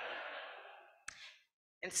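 A long breathy exhale into the microphone, like a sigh, fading out over about a second. A short breath follows, then the sound drops to dead silence, as from noise suppression on a video-call feed, before speech resumes.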